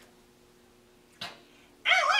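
A quiet room with a faint steady hum, a short breathy sound about a second in, then near the end a woman's voice breaks into a high, sliding yelp-like vocal sound.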